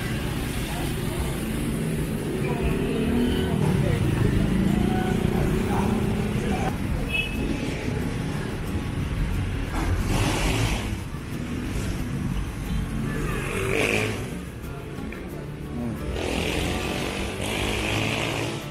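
Motorbike engines passing close by in street traffic, one rising and then falling in pitch a few seconds in. Voices in the background.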